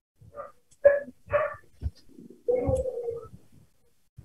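A dog barking: a few short barks in the first two seconds, then a longer, drawn-out one.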